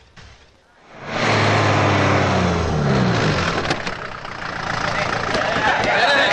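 A lorry's engine running in a steady low hum that drops in pitch about two to three seconds in as the truck slows. Voices of a group of men build up near the end.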